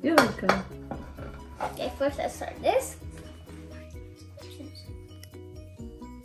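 Light background music playing, with a plate clinking against the countertop as it is passed over and set down in the first few seconds, and a few short voice sounds.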